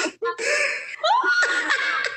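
A woman laughing hard, in broken bursts with a rising squeal about a second in.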